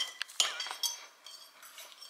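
A metal fork clinking against a ceramic dinner plate: a few sharp clinks in the first second, then quieter.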